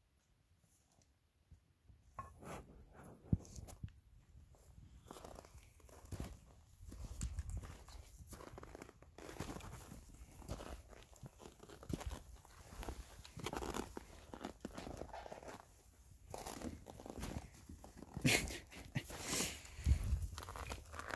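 Footsteps crunching on snow and ice, an irregular run of crunches starting about two seconds in.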